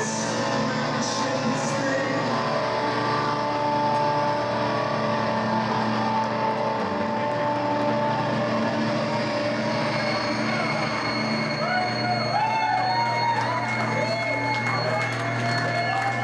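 Live post-punk band music played through a club PA: held, droning tones, with a wavering, warbling line coming in during the second half, over crowd voices.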